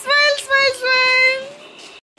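A high voice sings three drawn-out notes in a row, the last held longest before fading about three quarters of the way in.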